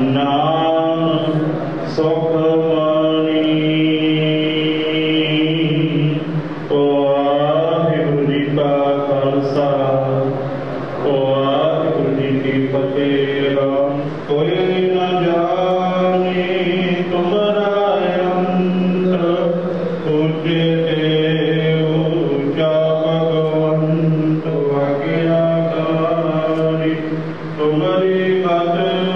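A man's voice chanting Sikh scripture (Gurbani) in long, held melodic lines with short breaks for breath, amplified through a microphone.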